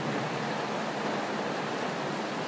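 Steady, even hiss of background noise between spoken phrases, with no speech.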